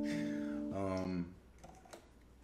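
Acoustic guitar strings ringing out and fading, the notes shifting in pitch about three quarters of a second in, then dying away, leaving faint clicks of fingers on the strings.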